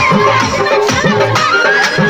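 Nepali folk music playing, with a steady drum beat under a high, held melody that bends and ornaments its notes.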